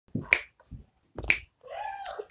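Two sharp clicks about a second apart, followed near the end by a faint short voice sound.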